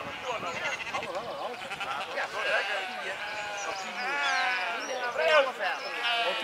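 A penned flock of sheep bleating, many calls overlapping, with a louder burst of bleats about four to five seconds in.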